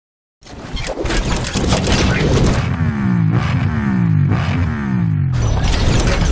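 Cinematic logo-intro sound effects: heavy booms and crashing hits, with a low droning tone that slides down in pitch several times in quick succession through the middle.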